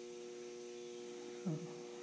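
Quiet, steady electrical mains hum, a few constant tones with no change.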